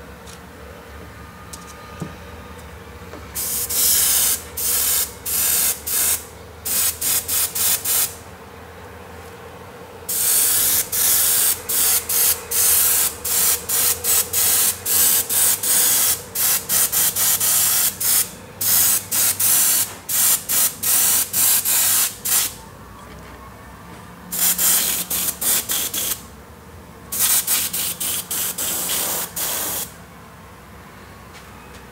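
Airbrush spraying pearl white paint in bursts of hiss: many short trigger pulses, with a long, nearly unbroken run of spraying in the middle.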